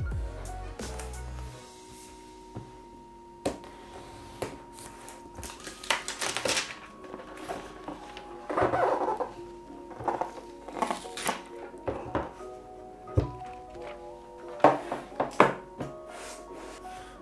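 Cardboard tablet box being handled and slid open: scattered thunks, knocks and rustling scrapes of the sleeve and lid, heaviest about six and nine seconds in, over steady background music.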